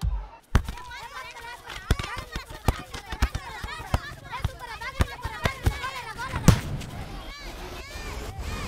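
Children shouting and calling at play in the distance during a football game, with scattered sharp thuds of a football being kicked; the loudest thuds come just after the start and about six and a half seconds in.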